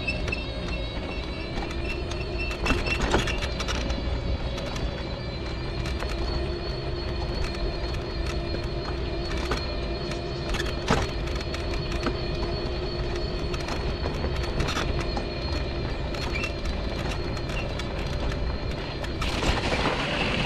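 Mobility scooter's electric drive motor whining steadily as it travels along a snowy path, with a few sharp knocks, the strongest about three seconds in and about eleven seconds in.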